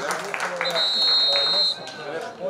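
Referee's whistle blown once, a steady shrill blast held for about a second, over players' voices on the pitch.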